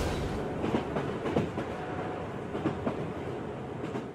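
A train running along the track: a steady rolling rumble of wheels on rails with scattered clicks.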